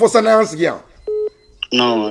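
A man speaking, broken about a second in by one short electronic beep; speech then picks up again with a thin, steady high tone running beneath it.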